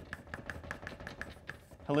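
Chalk writing on a blackboard: a quick run of short taps and strokes, about five or six a second, as letters are written.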